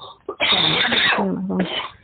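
A woman's loud, rough vocal burst of about a second, not words, ending in a short voiced tone, then a second shorter burst near the end.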